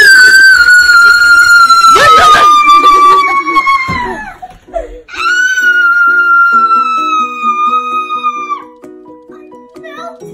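A girl's play-acted scream, long and drawn out and sliding slowly down in pitch, given twice, the second starting about five seconds in. Light background music with a plucked, steady tune comes in under the second scream.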